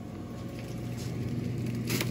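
Refrigerator-freezer running with a steady low electrical hum that grows slightly louder, with a few faint crinkles of plastic freezer bags.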